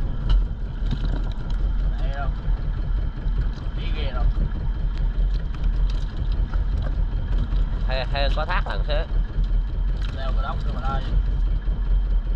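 A boat's engine running steadily, a continuous low rumble, with people talking in the background.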